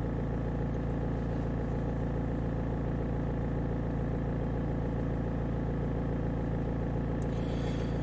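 Four-cylinder Bosch common-rail diesel engine idling steadily at about 850 rpm. The idle is even: a cylinder balance test taken at this idle gives per-cylinder speeds and fuel corrections close to zero, which is taken to mean the injectors are in good order.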